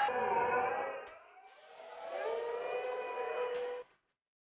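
Voices shouting, with long held pitched cries in the second half, cutting off suddenly just before the end.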